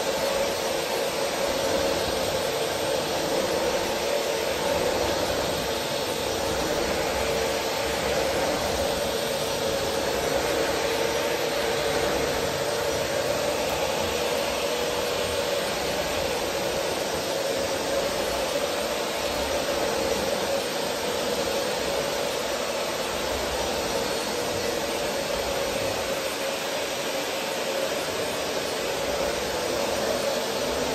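Upright bagless vacuum cleaner running steadily with a constant motor hum as it is pushed over a hardwood floor.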